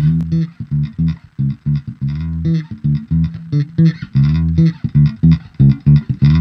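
Electric bass played through an Ampeg BA-108 bass combo amp, with a tone set on the amp's three-band EQ. It plays a quick riff of short, separate plucked notes.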